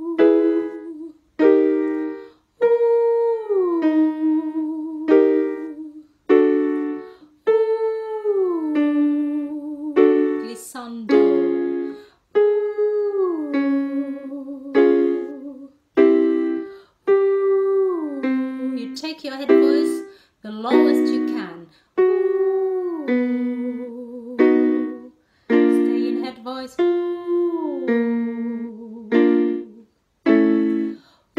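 A woman sings "ooh" vocal sirens in head voice, each a smooth slide downward, alternating with short keyboard chords about every 2.5 seconds. The glides start a little lower each time, working from high notes down to low notes.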